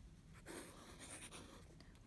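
Faint scratching of a pen drawing a loop on a paper workbook page, starting about half a second in.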